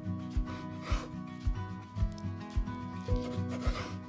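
A kitchen knife slicing through raw squid on a wooden cutting board: two short rasping cuts, about a second in and again near the end, over background music with a steady beat.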